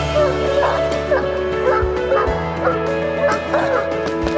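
Caucasian Ovcharka (Caucasian Shepherd Dog) barking aggressively in repeated barks, a guard-dog display of protective drive, over loud background music.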